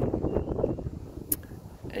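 Wind buffeting the microphone outdoors, an uneven low rumble, with a single sharp click about a second and a half in.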